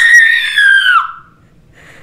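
A woman's high-pitched excited scream: one held note of about a second that dips at the end and breaks off.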